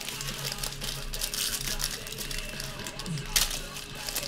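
Foil wrapper of a baseball card pack crinkling, with cards sliding out by hand as the pack is opened. A sharper crackle comes a little after three seconds.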